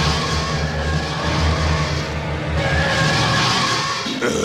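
Cartoon hover-bike engine sound effect: a steady, loud rumble with a jet-like rushing hiss as the bike flies past.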